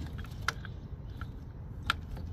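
A few small clicks and knocks as plastic electrical connectors are handled in an engine bay, the sharpest near the end, over a steady low hum.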